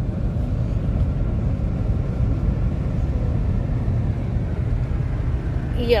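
Steady low road and tyre rumble inside a car cabin as the car coasts in neutral at highway speed, its engine only idling.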